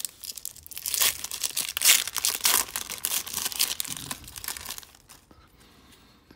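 A trading-card pack's plastic foil wrapper being torn open by hand, crinkling and crackling densely, loudest about two seconds in and dying away about five seconds in.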